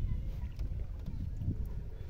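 Low, uneven rumble of wind on the microphone over faint water sounds around a small wooden boat, with a few faint ticks.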